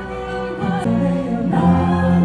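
Two singers performing with a live symphony orchestra in a concert hall, holding sustained notes over the orchestra; the music changes chord and swells louder about one and a half seconds in.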